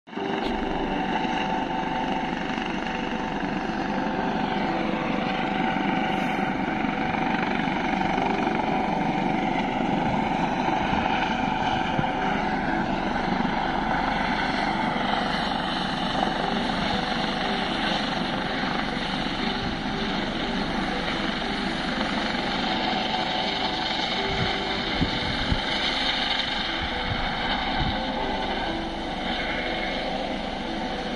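Helicopter flying past, a steady rotor and engine noise with a high whine that slides in pitch now and then, getting a little quieter near the end as it moves away.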